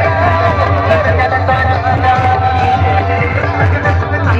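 Loud dance music with a heavy, steady bass and a held melody line, playing through a stack of horn loudspeakers on a DJ sound box.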